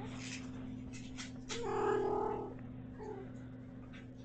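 A kitten meows: one loud meow about a second long near the middle, then a short, softer meow about three seconds in, over a steady low hum.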